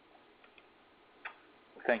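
A pause in speech over a conference-call line: faint line hiss with a few soft clicks, one sharper click just past the middle, then a voice begins "Thank you" right at the end.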